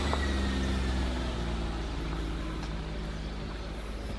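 A car engine droning steadily, loudest at the start and slowly fading away, with a faint whine that falls slightly in pitch during the first second.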